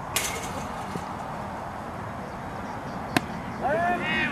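Baseball game sounds: a sharp smack of the ball just after the start, a single sharp crack a little over three seconds in, then several voices calling out near the end.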